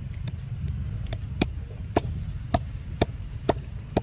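A macaque chewing and smacking on fruit close up: sharp wet clicks about two a second, over a low rumble of wind on the microphone.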